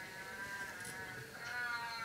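Faint humming in two long held notes, the second beginning about one and a half seconds in.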